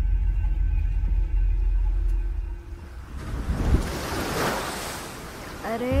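Ocean surf: a low rumble, then a wave washing in that swells to a hiss and fades over about two seconds.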